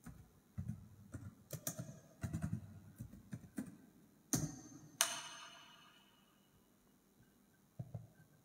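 Light taps and clicks of hands handling things on a tabletop, then two louder sharp knocks about four and five seconds in, the second ringing on for over a second.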